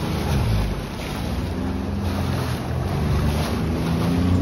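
Jet ski engine running with a steady low hum, under wind buffeting the microphone and choppy water splashing.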